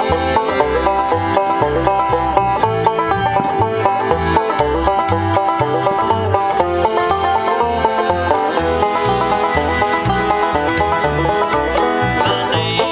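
Instrumental bluegrass-style tune: a five-string banjo picks quick rolling notes over steady upright-bass notes, with accordion chords held underneath.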